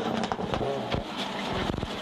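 Subaru Impreza rally car's turbocharged flat-four engine revving hard at speed, its pitch wavering, with several sharp cracks through it.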